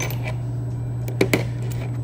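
Metal screwdriver bits and nut-driver shafts of a Husky 15-in-1 screwdriver clicking as they are handled and set down on a table, with two sharp clicks about a second and a quarter in. A steady low hum sits underneath.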